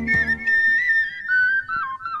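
Film soundtrack music: a solo, ornamented high melody on a flute-like wind instrument that steps gradually down in pitch. The plucked-string and bass accompaniment drops away about half a second in.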